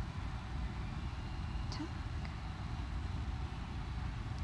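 Steady low background rumble with no clear rhythm or single event, plus a couple of faint, brief sounds about two seconds in.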